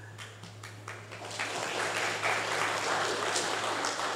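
An audience applauding, with many hands clapping; the applause swells about a second in and carries on strongly.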